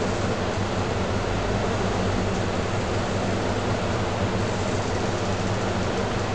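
Steady hiss with a low, even hum underneath: constant background noise with no speech and no distinct events.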